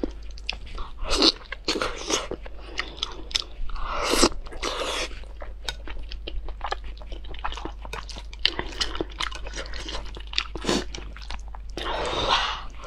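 Close-miked mukbang eating: wet chewing of glazed grilled eel and spicy instant noodles, with rapid mouth clicks and smacks, and a few longer slurps about a second in and around four seconds in.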